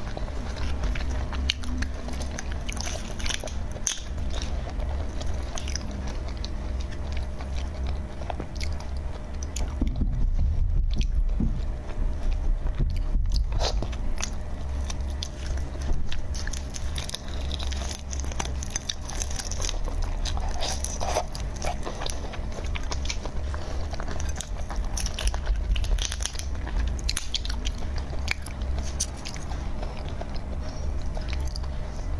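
Close-miked ASMR eating sounds: the shells of large red shrimp crackling and tearing as they are peeled apart by hand, mixed with biting and chewing, many small clicks and crackles throughout.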